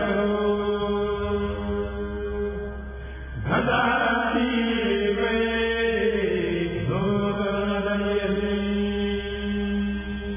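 A group of men chanting a qasida, a Sufi devotional poem, in unison with long held notes and no instruments. New phrases begin about three and a half seconds in and again about seven seconds in.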